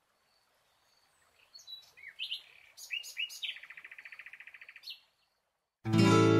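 A small bird singing: a few short rising chirps, then a fast trill of quickly repeated notes lasting about a second and a half, closed by one more chirp.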